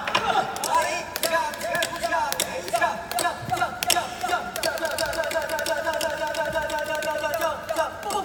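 Jinghu (Peking opera fiddle) playing a quick, wavering melody, punctuated by many sharp clicks.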